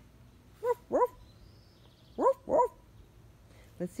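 Goldendoodle puppy giving four short, high-pitched barks in two pairs, each bark rising in pitch: wary alarm barks at an unfamiliar ball.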